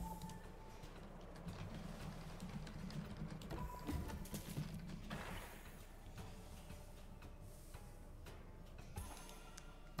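Faint slot-game music with soft reel and symbol sound effects from an online slot machine game.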